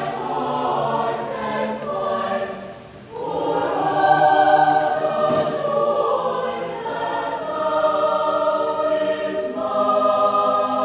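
Mixed choir of young women and men singing together in harmony in sustained phrases. About three seconds in, the sound dips briefly at a phrase break, then the full choir comes back in louder.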